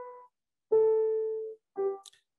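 Grand piano playing a slow descending scale, one note at a time: each note is lower than the last, the longest held about a second in and a short lower one near the end. The sound cuts to silence between the notes.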